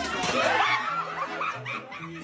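People laughing hard, with a short sharp knock near the start, over accordion and guitar music that drops out for about a second and comes back.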